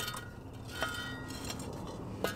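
Two light clinks with a short ring, about three-quarters of a second apart: fired pottery knocking against pottery or a tool as it is handled on the hot coals of an open pit firing.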